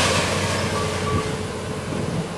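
John Deere excavator running steadily at work on a demolition, a continuous machine rumble with a low engine hum and no distinct crashes. A faint steady tone comes in about a quarter of the way in.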